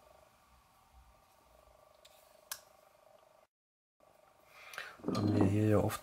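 A single short, sharp click from a folding pocket knife being handled, about two and a half seconds in, against otherwise faint handling noise.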